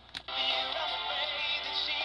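A click as the emergency radio's power/volume knob is switched on, then a song with singing playing from the radio's small built-in speaker, its sound lacking the highest treble.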